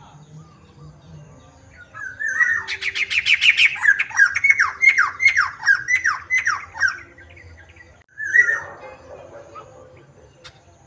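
Caged black-throated laughingthrush (poksai hitam) singing a loud run of whistled notes. Each note sweeps down in pitch, about three a second for some five seconds, followed by one more short call near the end.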